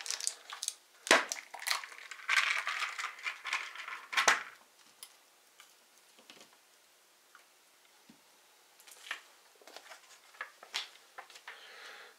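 Items being handled and set down on a tabletop: sharp knocks about a second in and just after four seconds, with crinkling packaging between them. Lighter taps and rustles follow near the end.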